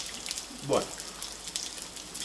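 Garlic and pieces of red and green pepper frying in a pan, a steady crackling sizzle while the garlic browns.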